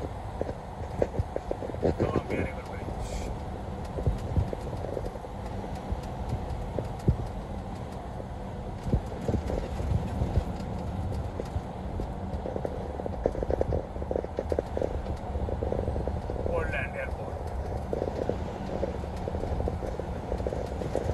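Cab noise of a vehicle driving on a wet highway: a steady low rumble of engine and tyres on the wet road, with many irregular clicks and knocks. A voice speaks briefly twice, about two seconds in and again near the end.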